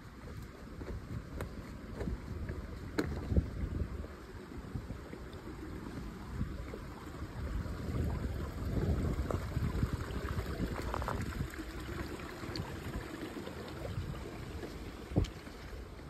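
A hiker's footsteps on wet rocks and leaves at a shallow creek crossing: irregular steps and knocks over running water, busiest a few seconds in and again past the middle, with wind rumbling on the microphone.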